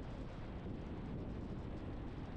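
Car driving at highway speed: a steady low rumble of tyre and road noise, with wind buffeting the microphone.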